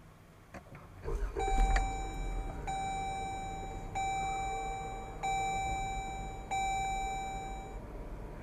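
Push-button start of a 2015 Jeep Grand Cherokee's 3.6-litre Pentastar V6, heard from inside the cabin. The engine catches about a second in, flares briefly, then settles to a steady idle. Over it a dashboard warning chime sounds five times, each tone held about a second.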